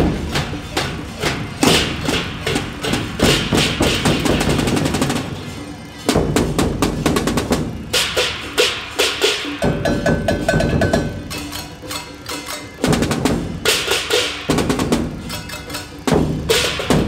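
Taiwanese temple gong-and-drum troupe playing: barrel drums, hand cymbals and gongs struck in a fast, dense rhythm. The pattern breaks and restarts near 6 s and again near 13 s, with a brief ringing tone in between.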